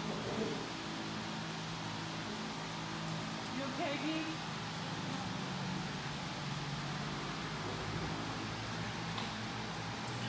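Steady low electrical hum of a fan running, with a short call from a person's voice about four seconds in.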